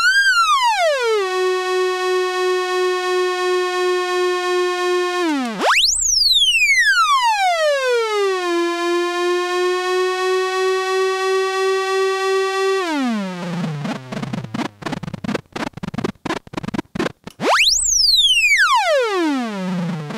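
A modular synthesizer oscillator whose pitch is driven by a control signal shaped through a Klavis Flexshaper. It sweeps quickly upward, glides back down and holds a steady pulsing tone, then sags lower. The cycle repeats, with a choppy, stuttering low passage before a final fast up-and-down sweep near the end.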